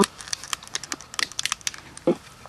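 A quick, irregular run of small clicks and crackles, about a dozen or more in two seconds.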